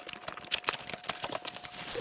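Cardboard box being opened by hand: a quick, irregular run of light clicks and scrapes from the flaps and tab.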